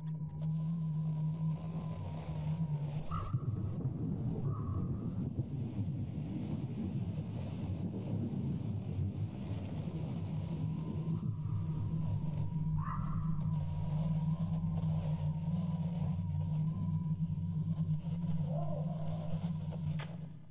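Dark ambient outro drone: a low rumbling hum under a thin steady high tone, broken twice by short crackles of static-like glitch noise, a few seconds in and again about halfway through.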